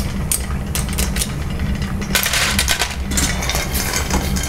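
A metal spoon and tongs clinking and scraping against a stainless steel saucepan and tray while opened clams are fished out, the shells clicking together, over a steady low rumble.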